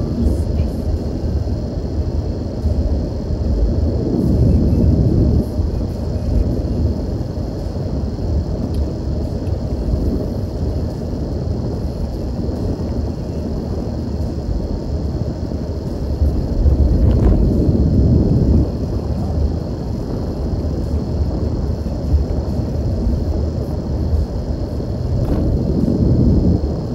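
Steady low rumble of a car's engine and tyres on the road, heard from inside the cabin while driving, swelling a little twice.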